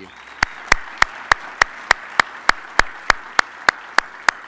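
Audience applauding, with one set of hands clapping close to the microphone in an even beat of about three loud claps a second above the rest of the crowd.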